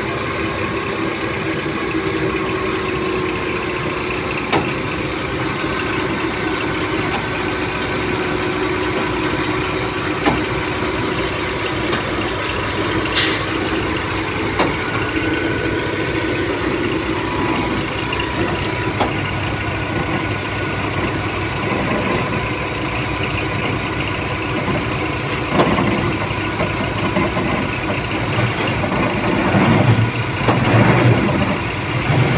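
Large TCM forklifts' diesel engines running steadily under load while lifting a heavy transformer, with a few brief sharp clicks scattered through.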